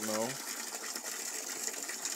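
Steady hiss of water running into a fish pond as it is being refilled.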